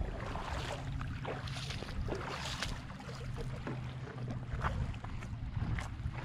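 Shallow seawater sloshing and splashing close to the microphone, with scattered short splashes and wind rumbling on the microphone. A faint steady low hum runs underneath.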